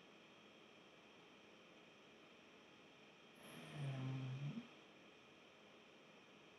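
Faint steady hiss, then, about three and a half seconds in, a man's short wordless hum, like a low 'mmm', lasting about a second.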